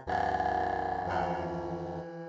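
Contemporary ensemble music: a long sustained chord of several steady tones, starting abruptly and held without change.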